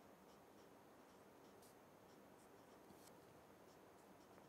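Marker pen writing on paper: a few faint, short strokes against near-silent room tone.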